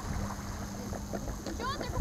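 Wind buffeting the microphone, with water at the shoreline and a steady low hum that stops shortly before the end. A few short, high, sliding calls come in near the end.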